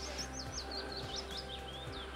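A small songbird singing a quick run of chirps, about eight a second, falling in pitch, over faint background music.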